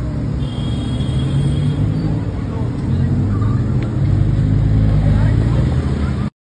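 Audi R8 Spyder's engine running with a steady deep note as the car moves slowly, getting louder from about halfway through.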